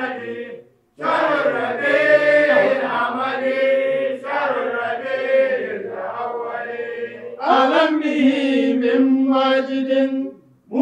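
Men chanting an Arabic devotional qasida for the Prophet's birthday (Mawlid) in long, drawn-out held notes, with a brief break for breath about a second in.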